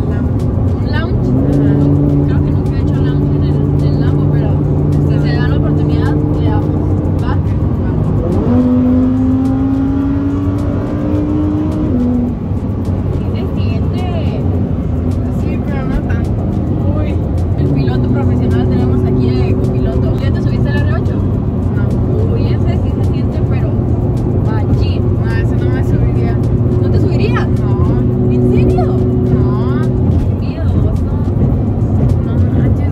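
Lamborghini engine heard from inside the cabin, running at steady revs. About eight seconds in its pitch rises and keeps climbing for a few seconds as the car accelerates, then drops away, and it settles to a steady note again later on. Voices are faintly heard over it.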